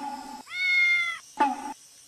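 A cat meows once: a single drawn-out call of under a second, held at an even pitch, starting about half a second in.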